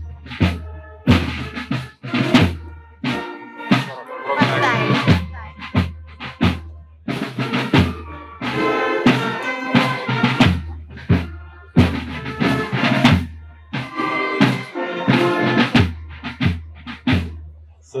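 Marching band music: snare and bass drum keeping a steady beat under held bass notes and other pitched parts.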